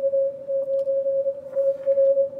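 A weak Morse code (CW) signal coming from the audio of a Yaesu FTdx5000MP receiver: a single mid-pitched tone that swells and fades over faint background hiss. The audio peak filter is set to super narrow, which pulls the weak signal up out of the noise.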